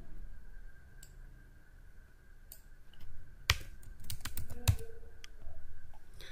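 Computer keyboard typing: a few scattered keystrokes, then a quick run of keystrokes between about three and five seconds in. A faint steady high hum runs underneath.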